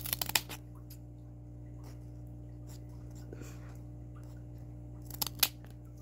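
Scissors snipping through thin cardboard: a quick run of crunchy cuts right at the start and a few more near the end.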